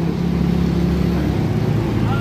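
A motor vehicle's engine running close by amid road traffic, its note dropping about halfway through.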